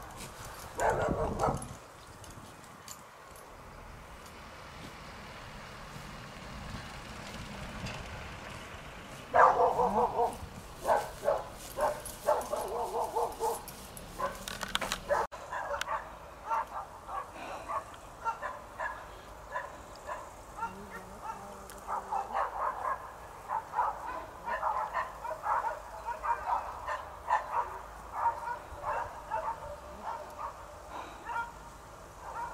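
A dog barking in quick series of short barks, starting about a third of the way in and going on to the end, with a short loud sound about a second in.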